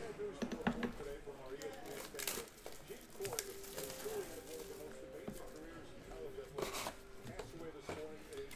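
Glossy basketball trading cards being flipped and slid one over another in the hand and set onto a stack, with soft rustles and a few sharp clicks, under faint background voices.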